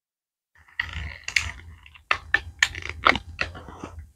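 A person sniffing a wax melt up close: after a rustle of handling, a run of short, quick sniffs, about three a second.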